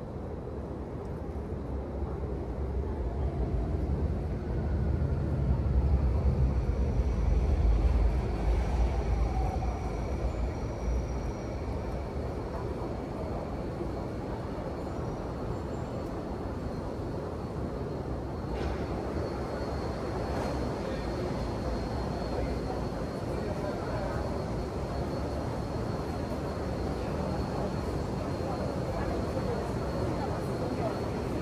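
Underground MRT station platform ambience: a deep rumble swells and fades over the first third, as of a train moving beyond the platform screen doors, then a steady hum with a faint high tone, and passengers' voices toward the end.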